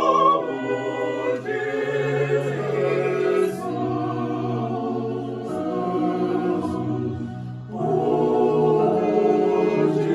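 Small mixed choir of men and women singing a slow, meditative hymn in Igbo in parts, holding long chords. There is a short break between phrases near the end, then a louder phrase.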